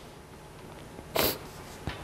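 A short sniff close to the microphone about a second in, against quiet room tone, with a small click near the end.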